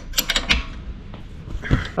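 Wrench tightening a bolt on a perforated steel bracket: a handful of quick metal clicks near the start, then quieter handling of tool and metal.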